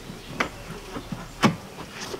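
Two short sharp knocks about a second apart as a stabilizer spacer is pushed and turned into a car's coil spring, over a faint low hum.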